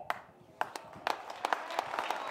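Crowd clapping: scattered claps begin about half a second in and quickly build into a patter of applause.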